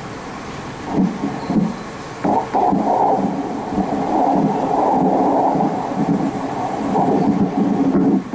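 Ultrasound scanner's spectral Doppler audio, the sound of blood flow in abdominal vessels. It comes in about a second in with two short surges, then runs on with a rising and falling level.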